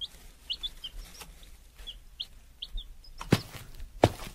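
Birds chirping with short, high calls, scattered several times through a quiet outdoor ambience, with a sharp click about three seconds in.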